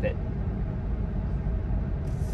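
Steady low road and tyre rumble inside the cabin of a Tesla electric car cruising at about 45 mph, with no engine note.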